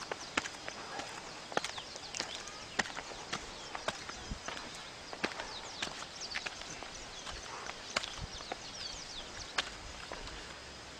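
Footsteps on bare granite rock: scuffs and sharp taps from sandaled feet walking uphill at an uneven pace, about one or two a second.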